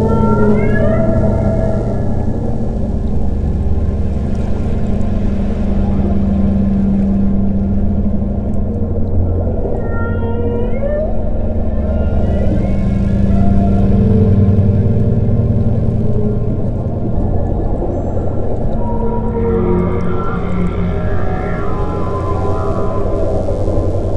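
Ambient meditation music of sustained low drones and held tones, overlaid with whale-song calls. Rising, whistle-like glides come about a second in, again around ten seconds in, and once more near the end.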